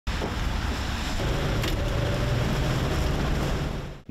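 Tram running in street traffic: a steady rumble and noise, with a low steady hum that sets in about a second in.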